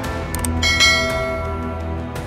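Subscribe-button sound effect: a short click, then a bright bell ding a little over half a second in that rings out and fades over about a second, laid over steady background music.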